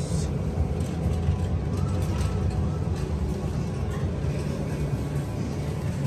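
Store background noise: a steady low rumble with faint voices in the background.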